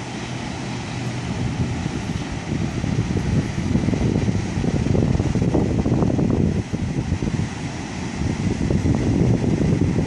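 Wind buffeting the microphone in gusts, strongest from about three seconds in and again near the end, over the wash of breaking ocean surf.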